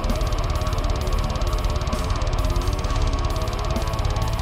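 Heavy metal music: a heavily distorted extended-range electric guitar playing a fast, low riff with a rapid, machine-like picking rhythm, over a dense band track with drums.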